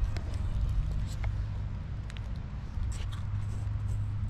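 Dry leaf litter crackling in scattered sharp crunches as a hand-held or body-worn camera moves over the forest floor, over a steady low rumble of handling and wind noise on the microphone.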